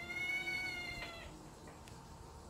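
A domestic cat's long, high-pitched mew, held at a steady pitch and ending about a second in.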